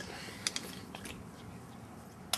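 Steady faint room noise with one light click about half a second in and a couple of softer ticks after it.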